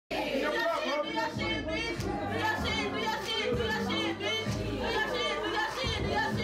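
Rap track: a rapped vocal over a beat with deep, sustained bass notes.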